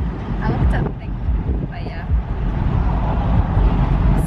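Wind buffeting the microphone in a moving open-top car, over a steady low rumble of road and engine noise.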